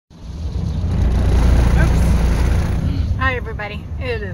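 Steady low rumble of road and engine noise inside a slowly moving car, building up over the first second; a woman starts talking near the end.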